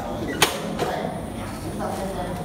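A single sharp click about half a second in, over steady room noise and faint voices.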